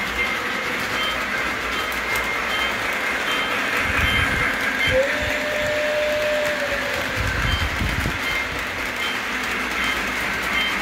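Model freight train rolling along its track: a steady rolling rumble with faint, regular ticks. About halfway through, a single steady tone sounds for about two seconds.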